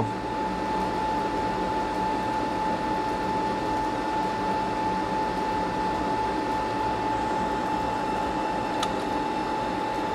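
Steady whir of a small fan with a constant high whine over it, unchanging throughout. A faint click comes near the end.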